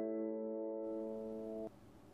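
Intro music: a single held keyboard chord fading slowly, cut off sharply near the end and leaving faint room noise.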